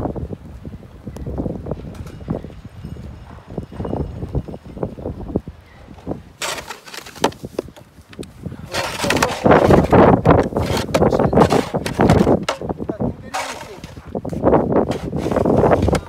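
Plastic snow shovels scraping and pushing wet snow across brick paving in repeated, irregular strokes. They are loud from about six seconds in, after a quieter stretch.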